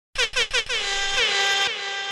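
Air horn sound effect, as dropped by a sound-system DJ at the start of a mix: three short blasts, then one longer held blast of about a second that tails off, each blast starting with a quick drop in pitch.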